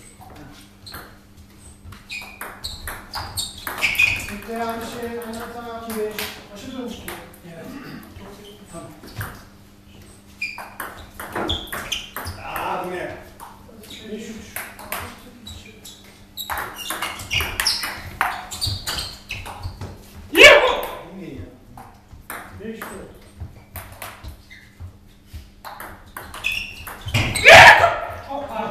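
Table tennis ball being played in doubles rallies: irregular sharp clicks of the ball against paddles and table. Voices talk between points, with two loud shouts, one about two-thirds of the way through and one near the end.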